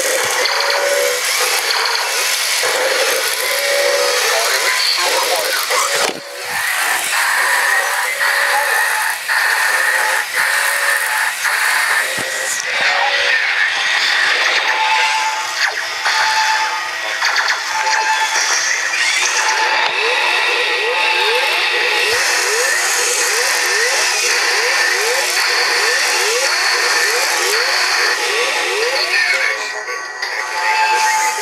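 Several battery-powered toy robots walking and playing their electronic sound effects at once through small speakers. It is a jumble of repeated beeps, quick rising laser-like sweeps, synthesized music and voice, over the clicking of their plastic walking gears.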